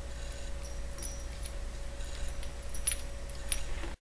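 Light metallic clicks of steel nuts and washers being handled and slid onto a threaded steel rod by hand, a few separate ticks over a steady low hum.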